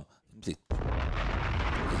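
An explosion sound effect, a 'nuke bomb', cutting in suddenly about two-thirds of a second in after a moment of silence and going on as a steady deep rumble with hiss.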